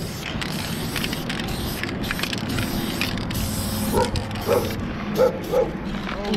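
Aerosol spray paint can hissing in a series of short strokes as letters are painted on a metal dumpster. Near the end, about four short pitched calls sound over it.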